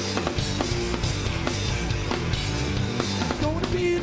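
Rock band playing live: drum kit, electric bass and electric guitar in a loud, steady groove, with no vocals.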